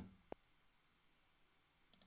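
Near silence: room tone, with one short, faint click about a third of a second in.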